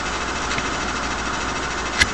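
A steady low hum with a hiss over it, unchanging throughout: machine-like background noise.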